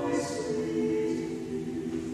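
Church choir singing, several voices holding long notes, with a sung 's' just after the start.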